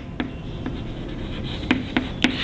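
Chalk writing on a chalkboard: scratchy strokes with a few sharp taps as the chalk meets the board.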